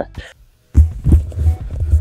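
A short silent gap, then a thump about three-quarters of a second in and a steady low rumble: handling noise from a handheld microphone being held and moved.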